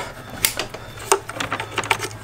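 Plastic wiring-harness connectors being pushed onto throttle body sensors: three light clicks about two-thirds of a second apart, with small handling rattles between them.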